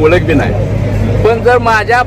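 A man speaking in Marathi, with a steady low hum underneath.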